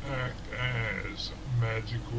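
Narration: a voice speaking in slow, drawn-out phrases.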